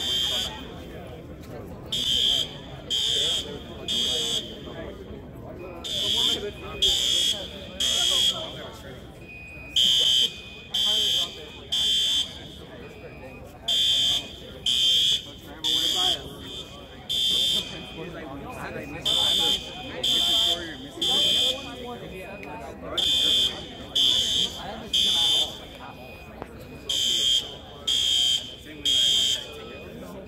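Fire alarm horns (System Sensor and Gentex horn/strobes) sounding the temporal code 3 evacuation signal: three short high blasts, then a pause, repeating every few seconds. At times a second horn of a slightly lower pitch sounds with the first. The alarm is false, set off when a burnt cafeteria oven tripped a heat detector.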